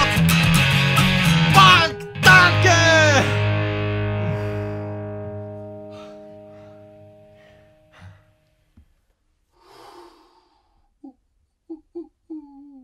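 End of a punk-rock song: guitar and loud singing, a brief stop about two seconds in, then a final chord under a last sung line that rings out and fades away over about five seconds. A few faint short voice sounds follow near the end.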